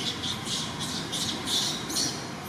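A quick series of short, high-pitched animal calls, about six in two seconds, over a steady outdoor background hiss.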